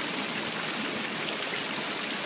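Steady rushing noise of running water, even throughout.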